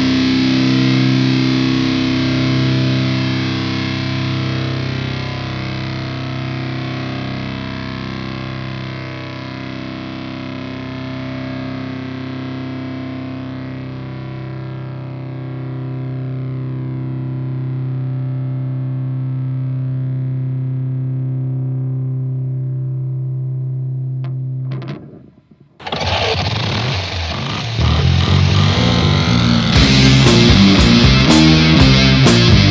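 Heavily distorted fuzz electric guitar holding a low droning chord at the close of a stoner/doom metal song, its top end slowly fading. About 25 seconds in it drops away briefly, and the next song starts, louder.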